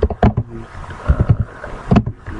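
Typing on a computer keyboard: irregular keystroke clicks in short runs, with a pause in between and a sharper keystroke near the end.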